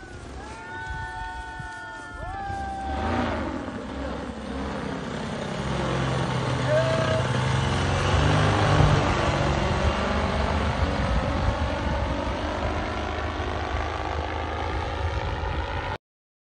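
Vittorazi Moster 185 single-cylinder two-stroke paramotor engine and propeller flying overhead, growing louder from about four seconds in to a peak about halfway through as it passes close above, with a swirling, phasing quality to the sound.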